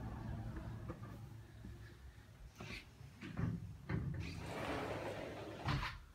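A door being moved and shut: a few knocks, a longer rushing scrape, then a thump near the end. Low rumble of wind and handling on the phone's microphone at first.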